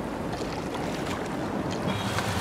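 Steady wash of sea waves and wind at the shore, an even rushing noise with a low rumble.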